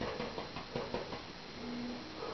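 Soft scratchy dabbing of a paint-loaded bristle brush tapped against a canvas, with a faint short hum near the end.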